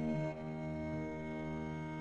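Slow, sustained ensemble music in a medieval-inspired style: bowed strings, viola da gamba and baroque violin, holding long steady notes, with one note changing shortly after the start.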